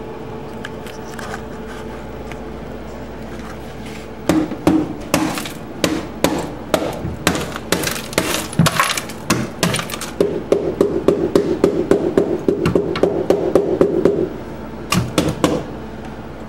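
Dead-blow hammer striking and breaking up ice frozen in the bottom of a freezer compartment. The blows start about four seconds in, irregular at first, then come in a fast run of about five a second, with a couple more near the end.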